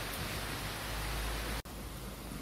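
Steady rain falling, an even hiss. It breaks off sharply about one and a half seconds in, then carries on a little quieter.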